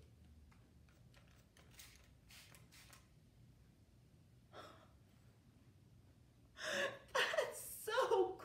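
A few short, faint squirts of a plastic trigger spray bottle about two to three seconds in, then a woman gasping excitedly near the end.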